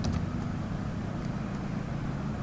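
Steady low hum with a faint hiss: background noise picked up by the recording between spoken lines.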